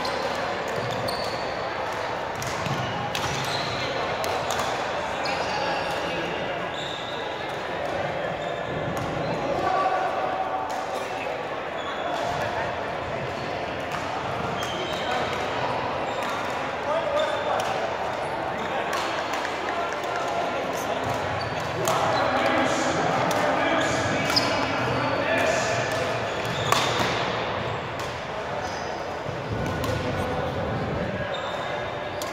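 Badminton rally: rackets striking the shuttlecock in short sharp cracks at irregular intervals, with players' footfalls thudding on the wooden court. Chatter from people around the hall runs underneath.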